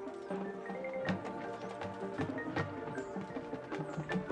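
Marching band playing, with mallet percussion and struck percussion prominent over held low notes, and several sharp strikes through the passage.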